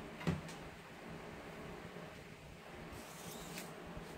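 Quiet handling sounds while the width of a length of fabric is measured: a soft knock just after the start, then faint rustling and a few light ticks.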